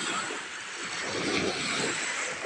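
Small wave breaking at the shoreline and washing up onto the sand, the rush of water swelling about a second in.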